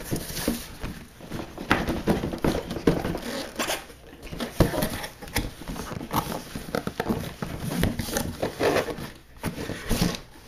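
A cardboard box and its paper being opened by hand: rustling, tearing and scattered knocks and scrapes at irregular moments.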